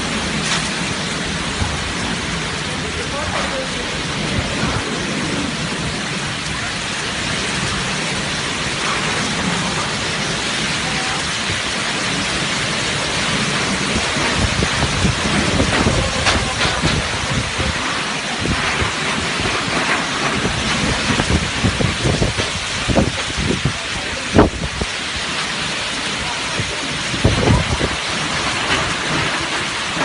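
Heavy rain, a dense steady hiss throughout. Irregular thumps and knocks come through it more often in the second half, the sharpest about three-quarters of the way in.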